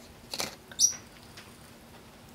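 Brief handling noise as a chicken wing is picked up from a tray of takeout food: a short rustle, then a sharp, high-pitched click or squeak just under a second in.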